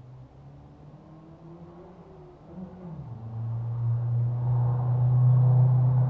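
A motor vehicle's engine, faint at first, dips in pitch about halfway through, then grows much louder and holds a steady low hum.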